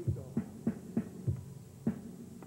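A low drumbeat, about three beats a second, over a steady hum: the lead-in to an entrance music cue.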